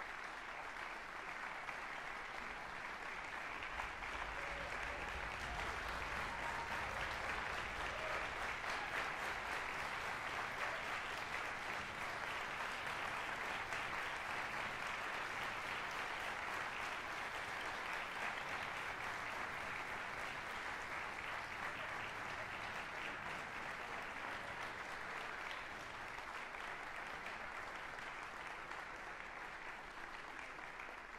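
Audience applauding steadily, building over the first several seconds and then easing off slightly toward the end.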